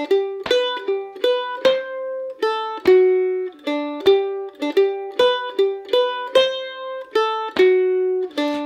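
F-style mandolin picking the first two measures of an Irish jig in G slowly as single notes, played over as a loop at a steady, even pulse.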